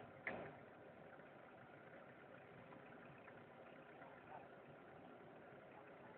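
A single sharp knock just after the start, then near silence with a faint steady hiss.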